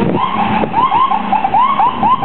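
Car alarm sounding a rapid run of short rising-and-falling chirps, about four a second, over street and wind noise.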